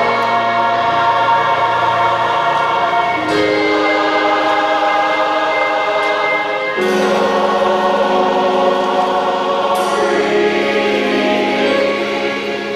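Closing music: a choir singing slow, long-held chords, the harmony shifting about every three seconds.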